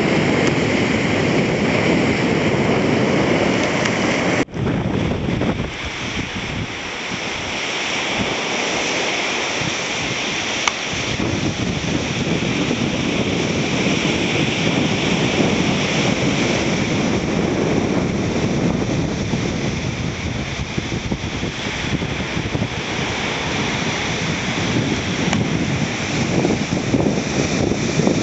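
Small, choppy surf waves washing over rocks and sand, with wind rumbling on the microphone. There is a sudden cut about four seconds in, and after it the wind rumble drops for several seconds before it picks up again.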